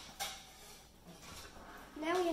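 A single light tap on a tabletop about a fifth of a second in, followed by faint quiet handling noise.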